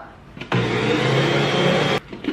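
Electric stand mixer running steadily, its motor starting about half a second in as it stirs flour and baking powder into banana bread batter.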